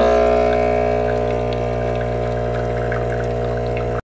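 Espresso machine's pump humming steadily while it pulls a shot of espresso into a cup.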